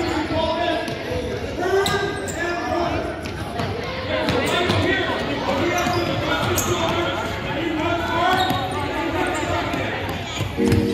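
Children's and coaches' voices chattering and calling out in a reverberant gymnasium, with scattered knocks of balls or feet on the hardwood court.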